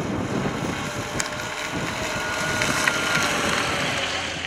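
Steady outdoor noise, a hiss and rumble with a faint high whine running through it, swelling slightly toward the end.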